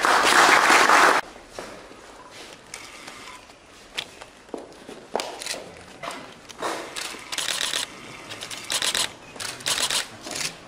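A short burst of applause that cuts off abruptly about a second in, followed by scattered light clicks and rustles.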